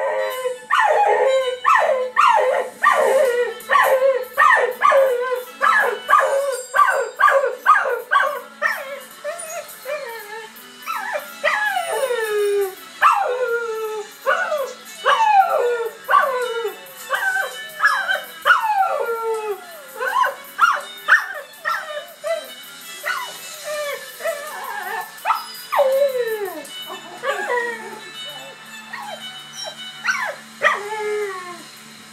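A red cocker spaniel howling along to a television theme tune, with the music playing underneath. For the first ten seconds the calls come quick and short, about two a second, each dropping in pitch. After that they turn into longer howls that slide down, coming more sparsely near the end.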